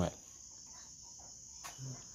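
Faint, steady high chirring of crickets.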